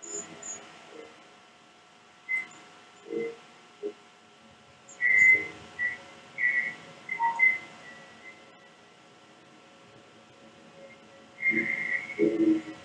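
Sparse short whistled notes, some in quick runs, with low murmuring sounds under them, over a faint steady hum, as part of a lo-fi experimental music track.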